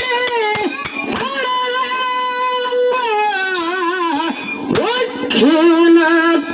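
A singer's high voice holding long, wavering notes and sliding between pitches in a dollina pada folk song, with scattered strokes from a hand-played drum and hand cymbals underneath.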